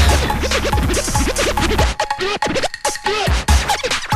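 Breakbeat DJ mix with turntable scratching over a heavy bass beat. The bass drops out about halfway through, leaving quick scratches and sharp drum hits.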